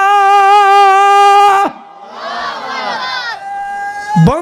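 A man's voice holding one long, loud sung note breaks off just under two seconds in; then many voices of an audience call out together for about a second and a half in response.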